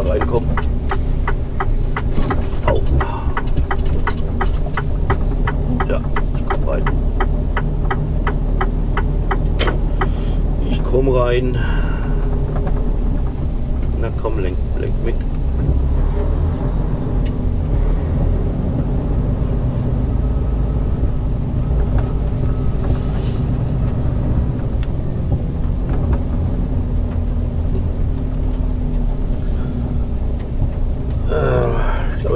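Inside the cab of a Mercedes-Benz Actros SLT truck: the diesel engine rumbles steadily at low speed while the turn-signal relay ticks about twice a second for the first ten seconds as the truck turns in. A brief gliding squeal comes about eleven seconds in.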